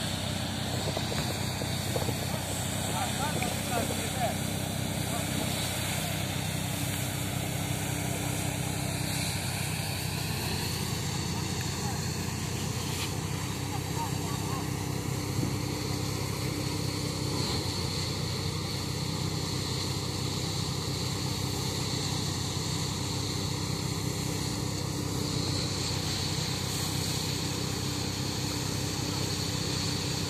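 Engine-driven paddy thresher running steadily under load as rice bundles are fed in, a constant low drone that does not change in level.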